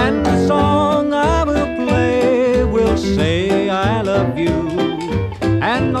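Instrumental break of a 1951 western swing band recording: a lead melody with vibrato over a steady bass beat about twice a second, ending in a rising slide just before the singing comes back in.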